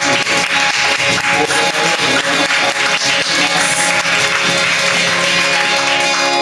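Live acoustic band playing an instrumental passage with no vocals: quick, dense cajon and percussion hits over guitar.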